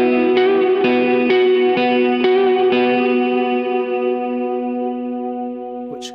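Clean electric guitar through a Catalinbread Soft Focus reverb pedal: notes picked over a held chord about twice a second for the first three seconds, then left to ring in a long, slowly fading reverb wash that goes on forever.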